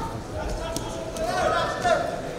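Thuds and slaps of freestyle wrestlers hand-fighting and stepping on the mat, with a man's voice shouting loudly in the second half.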